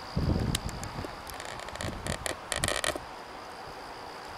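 A run of quick metallic clicks and rattles, like carabiners and climbing hardware knocking together, a little over a second in, after a low thump of handling or wind on the microphone at the start. A steady high insect trill runs underneath.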